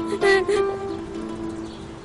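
Background music: a few short notes early on over held tones that slowly fade.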